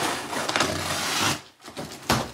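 Scissors slitting the packing tape along the seam of a cardboard box: a continuous scraping, tearing noise that runs for about a second and a half, then stops.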